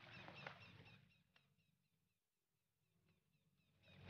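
Near silence: a faint, brief stretch of outdoor background sound in the first second, then nothing.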